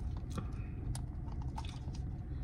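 Close-miked chewing: scattered soft mouth clicks as food is chewed. Underneath, a steady low rumble from the running car with the heat on.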